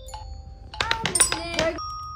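Glockenspiel bars struck with mallets: one note near the start, then a quick run of several notes about a second in, the notes ringing on after each strike.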